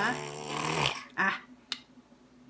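A short throaty cough lasting most of the first second, followed by a brief vocal sound a little after a second in and a faint click.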